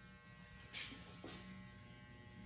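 Corded electric hair clippers running with a faint, steady buzz, with a couple of brief soft swishes along the way.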